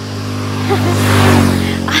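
A road vehicle passing close by, its noise swelling to a peak just past a second in and then fading as it goes away.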